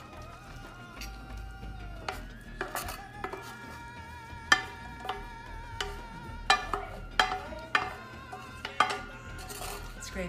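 A wooden spoon scraping and knocking against a stainless steel skillet as sautéed peppers and onions are scraped out of it, several sharp knocks in the second half. Soft background music with held notes plays throughout.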